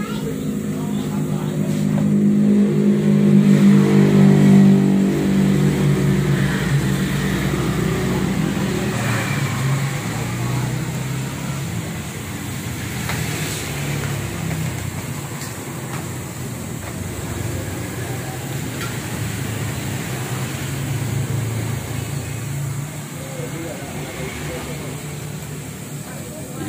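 A motor vehicle engine running, loudest for a few seconds near the start and then settling into a steady, lower drone.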